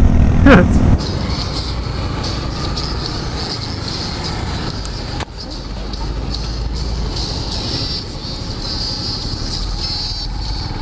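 A short laugh, then a motorcycle running at low speed heard from the rider's camera: steady engine and road rumble under a constant high-pitched hiss.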